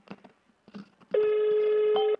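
A mobile phone on speaker sounds one steady electronic call tone for about a second while a call is being put through. Faint clicks come before it.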